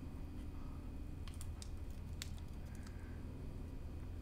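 Faint crinkling and a few scattered small clicks of a thin clear plastic protective film being peeled off a glossy plastic casing and handled.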